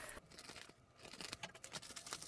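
Faint crinkling and rustling of a plastic courier mailer bag as it is handled and opened, with a brief lull just before the middle.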